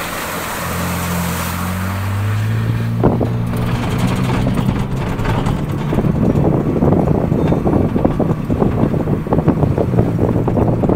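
Ford Bronco Raptor's twin-turbo V6 pulling out of a muddy water puddle, its pitch rising as it accelerates, with water splashing at the start. Later it settles into steady running along the trail, with wind buffeting the microphone.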